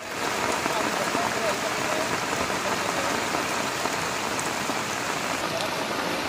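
Heavy monsoon rain pouring down as a steady, even hiss.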